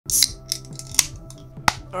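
A can of Coca-Cola Zero Sugar being opened: a sharp crack and a short fizzing hiss as the ring-pull breaks the seal, then a few more sharp clicks, over background music.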